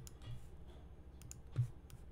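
A few faint, scattered clicks of a computer mouse and keyboard, some with a small low thud, over a steady low hum.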